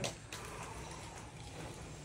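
A lull with only faint, steady background noise and no distinct sound.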